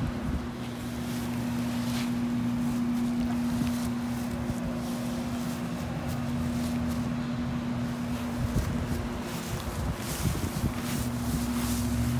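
A steady low mechanical hum holding one unchanging tone, with wind noise on the microphone.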